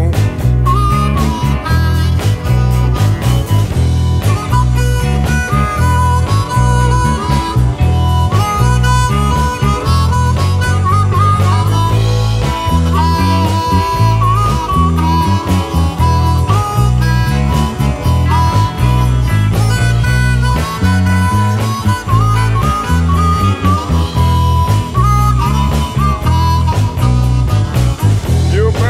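Blues harmonica solo, a melody of wailing bent notes, over a blues band backing with a steady, prominent electric bass line.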